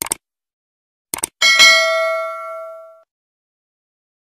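Subscribe-animation sound effect: a couple of quick mouse clicks, two more clicks about a second later, then a single bell ding that rings on and fades out over about a second and a half.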